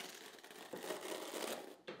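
Detangling comb being dragged through a tangled synthetic wig, a faint crinkling rasp of the fibres ripping through the teeth.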